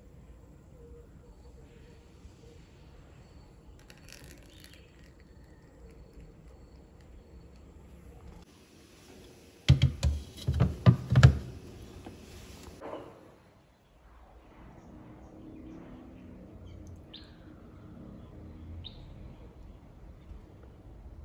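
A glass baking dish set onto a refrigerator shelf, making a quick run of sharp clattering knocks about ten seconds in. Near the end, two short falling bird chirps are heard.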